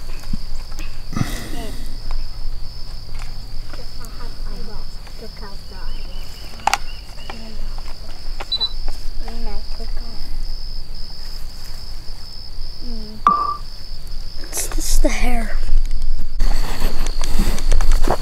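Steady high-pitched chorus of insects, with faint distant voices and a few clicks. Near the end a loud rustling noise comes in.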